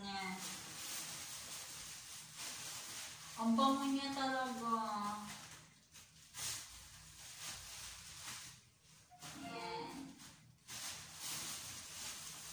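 A plastic carrier bag rustles and crinkles while herbs are handled from it. Two drawn-out voice sounds come through: one starts about three and a half seconds in and lasts nearly two seconds, its pitch slowly falling, and a shorter one follows near ten seconds.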